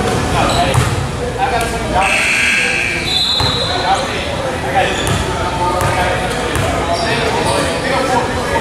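Basketball bouncing on a hardwood gym floor as a player dribbles at the free-throw line, amid the echo of voices in a large gym hall.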